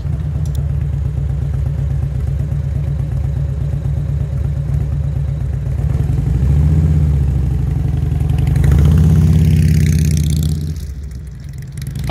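Cruiser motorcycle engine running at low speed as it rolls in and stops. It then picks up twice, louder, as the bike pulls away and turns, and fades as it rides off near the end.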